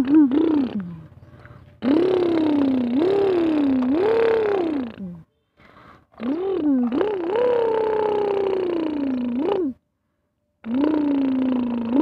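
A person making bulldozer engine noises with their voice, a pitched hum that swoops up and down in pitch. It comes in three long stretches of about three seconds each, with short breaks between them.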